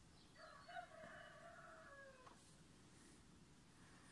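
A faint, distant animal call: one drawn-out note of about two seconds that drops in pitch at the end, over quiet background.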